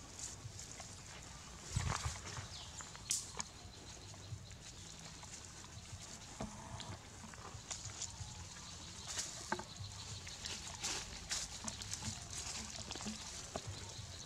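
Long-tailed macaques moving about in dry leaf litter and among thin saplings: scattered rustles, crackles and snaps of dry leaves and twigs, with a louder knock about two seconds in.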